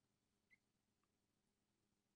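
Near silence, with one faint brief click about half a second in.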